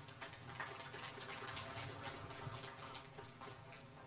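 Faint, sparse applause: irregular claps, several a second, over low room noise, thinning out near the end.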